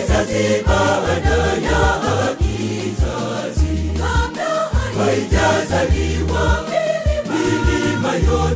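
Swahili Catholic choir song from a DJ mix: a choir singing over a steady, bouncing bass line.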